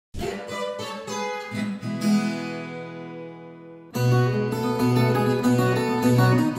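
Plucked string notes end on a chord that rings and fades, and the sound cuts off abruptly about four seconds in. A viola caipira then starts playing a plucked melody with chords.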